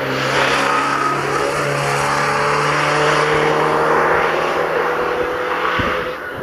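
Fiat 125p rally car's four-cylinder petrol engine running hard as the car passes close and drives away, its sound dropping near the end.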